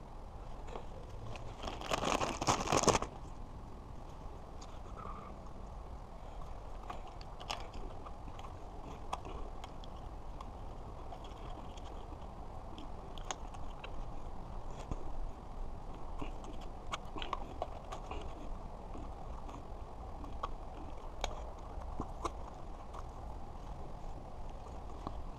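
Hands working on an e-bike's handlebar controls: scattered small clicks and rattles of parts being handled and fitted. About two seconds in there is a loud burst of noise lasting about a second.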